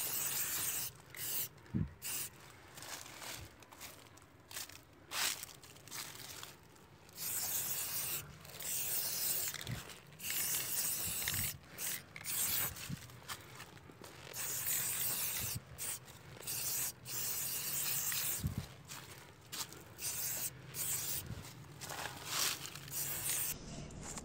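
Aerosol spray-paint can hissing in repeated bursts of a second or two, each cut off sharply, as graffiti is sprayed on a brick wall. A few dull knocks come in between.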